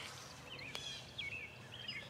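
A few faint, short bird chirps against quiet outdoor background noise, with a single sharp click just under a second in.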